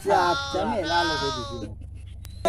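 One long, quavering, bleat-like vocal cry that falls in pitch and fades out after about a second and a half.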